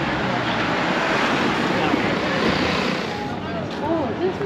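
A van driving past on a busy shopping street, its road noise swelling over the first second and fading about three seconds in, with passersby talking.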